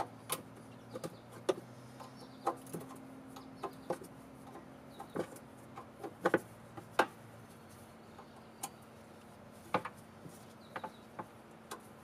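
Irregular sharp metallic clicks and taps of hand work on a golf cart's carburetor and throttle linkage, with the loudest clicks about six to seven seconds in. A steady low hum runs underneath.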